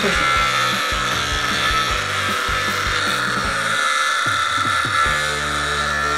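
ZEITGARD oscillating facial cleansing brush buzzing steadily as it runs against the skin of the cheek.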